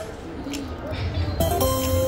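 Rich Little Piggies video slot machine's electronic game sounds as the reels spin: a short lull, then about 1.4 s in a new spin starts with a held electronic chord of steady tones over low casino hubbub.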